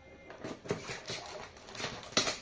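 Knife blade scraping and scoring the side of a 5-litre plastic jug, a few short scratchy clicks after a brief quiet start.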